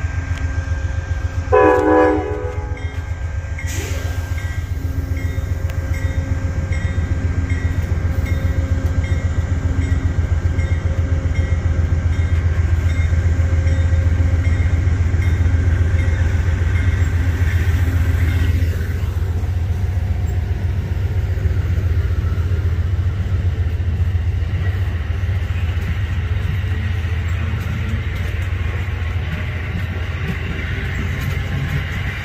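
Amtrak passenger train passing close by: a steady, heavy rumble of wheels on rail that builds and then eases a little after about 18 seconds. A short horn blast of about a second sounds roughly two seconds in.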